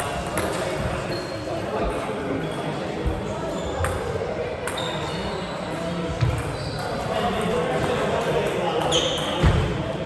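Table tennis ball clicking off bats and table in a large hall, with short high shoe squeaks on the wooden floor and a rally starting near the end.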